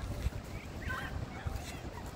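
Low, uneven outdoor rumble with a short, faint call about a second in.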